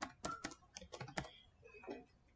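Faint typing on a computer keyboard: a quick, irregular run of about eight keystrokes as a mobile number is keyed in, with a few softer taps near the end.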